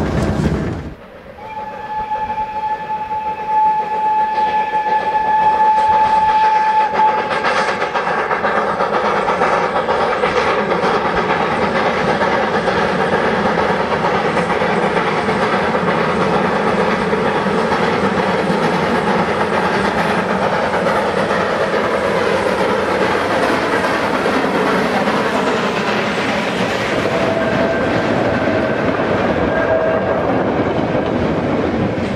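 1915 Italian-built steam locomotive 440 008 working uphill with its short train. About a second in, its whistle sounds one long note of about five seconds; near the end the wagons roll past with a clatter of wheels on rail joints.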